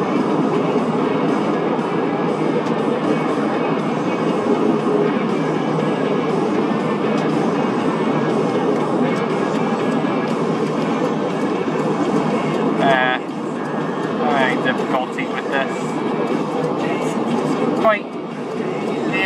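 Steady road and tyre noise inside a moving car's cabin, with brief voice-like sounds about thirteen and fifteen seconds in.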